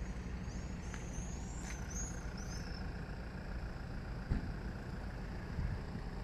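Steady low rumble of road traffic and car engines. A few short high chirps come between about half a second and three seconds in, and a brief knock a little after four seconds.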